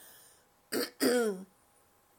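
A woman clearing her throat about a second in: a short rasp followed by a longer voiced 'ahem' that falls in pitch.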